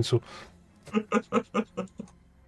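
A man laughing: about five quick 'ha' sounds in a row in the second half, just after a spoken word ends.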